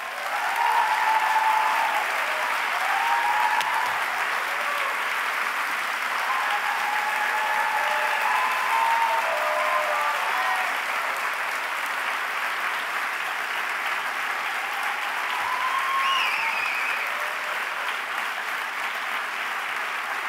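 Large audience applauding steadily, starting right away and holding throughout, with a few voices calling out over the clapping early on and again near the end.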